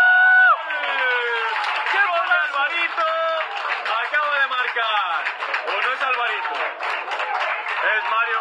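A man's excited shout, held briefly at the start, then more excited shouting over clapping and applause as a goal is celebrated.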